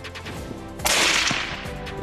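A single hunting-rifle shot a little under a second in: a sharp crack that fades away over about a second.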